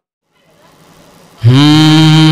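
A moment of silence and faint room noise, then about one and a half seconds in a man's voice comes in loud through a microphone on a long held sung note, opening a naat recitation.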